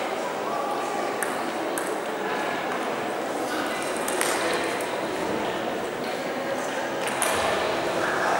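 A few sharp ticks of table tennis balls striking bats and tables, spaced irregularly, over steady background chatter and room noise in a sports hall.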